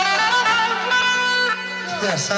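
Electronic keyboard playing a mugham instrumental passage in a violin-like voice: sustained notes held over a steady low drone, falling off about a second and a half in.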